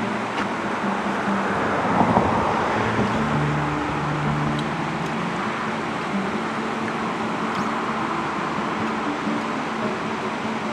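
Steady rushing of spring-swollen river rapids, with road traffic running alongside; a vehicle passes loudest about two seconds in.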